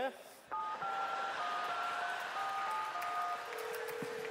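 Touch-tone telephone keypad dialing: a rapid run of two-note keypad beeps, each digit lasting a fraction of a second. A steady, lower single tone takes over near the end.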